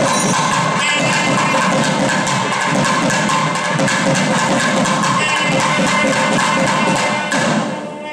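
A thavil and nadaswaram ensemble playing temple music. The thavil drums beat a fast, dense rhythm under the nadaswaram's steady held notes, and the drumming drops away near the end.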